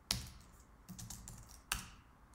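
Typing on a computer keyboard: a handful of scattered keystrokes, the loudest about three-quarters of the way through.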